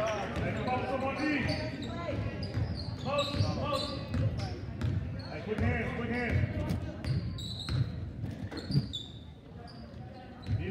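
Basketball dribbled on a hardwood gym floor, with short high sneaker squeaks and spectators' chatter echoing in the hall.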